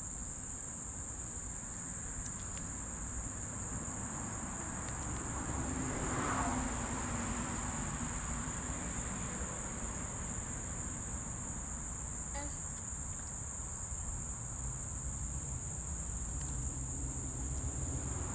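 Steady high-pitched chorus of insects chirring without a break, over a low rumbling background noise that swells briefly about six seconds in.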